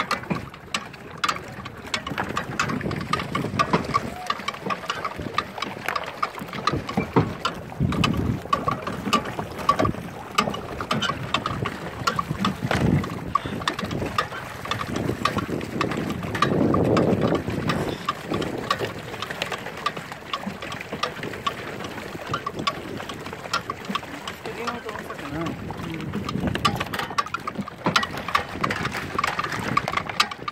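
A pedal boat being pedalled on a lake: its pedal drive gives a steady run of rapid small clicks over the noise of wind and churning water, with heavier swells of sound now and then.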